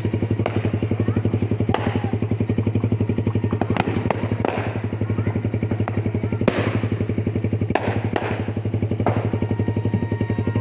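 Suzuki Raider 150 carb's single-cylinder four-stroke engine idling steadily, with sharp exhaust pops breaking in irregularly every one to two seconds: afterfire in the exhaust, the kind that throws flames from the muffler.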